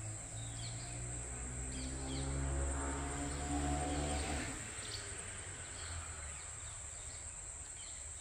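Outdoor ambience of a steady high insect drone with a few short bird chirps over a low rumble. A low pitched hum joins about a second and a half in and cuts off about four and a half seconds in.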